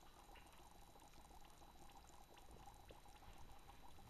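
Faint bubbly fizzing of dry glaze powder in a bucket of water, with many tiny scattered pops as the water soaks into the dry mix.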